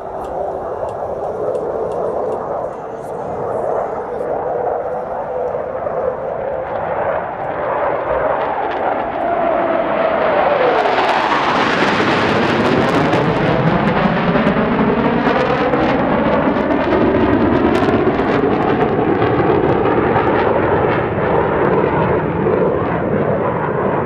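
Two F-15J fighter jets with their Pratt & Whitney F100 turbofans making a high-speed formation pass and pitch-out break. The engine noise swells, drops sharply in pitch as the jets go by about halfway through, then stays loud with a wavering, sweeping sound as they pull away.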